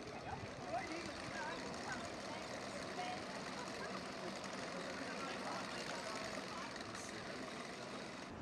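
Street noise: a steady hum of traffic with indistinct voices of people nearby mixed in.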